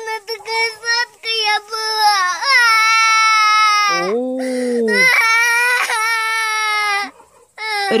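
A small girl crying hard: first a string of short, choking sobs, then long, high-pitched wails, each broken off by a gasp for breath.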